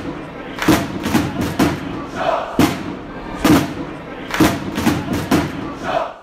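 Closing jingle of heavy drum hits, roughly one a second with some in quick pairs, over crowd noise.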